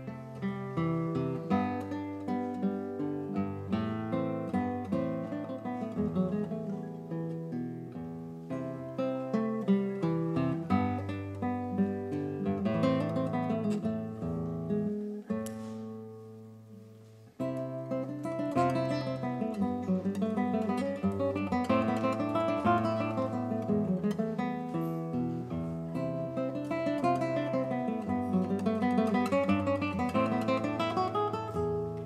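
Classical guitar played solo, fingerpicked single notes and chords. About halfway through the playing stops, the last notes ring and fade for a couple of seconds, and then the piece starts again.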